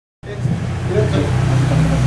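A loud steady low hum sets in just after the start, with faint voices of people talking in the room over it.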